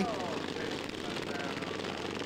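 Several governed single-cylinder racing lawn mower engines running together as a pack of mowers races past, a steady, dense engine noise.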